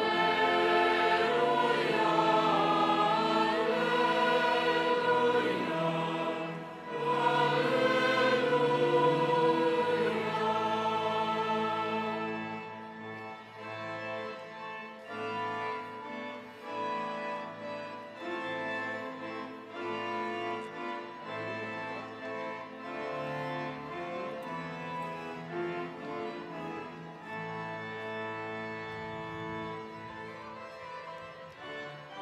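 A choir singing sacred music for the Mass, louder for about the first twelve seconds, then softer.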